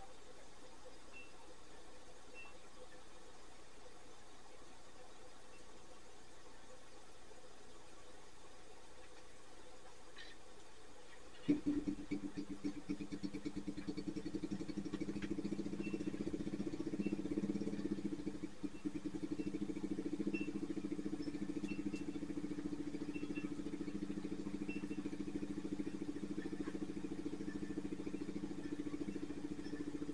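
An engine next door starts suddenly about twelve seconds in and then runs on steadily at idle as a low, even drone.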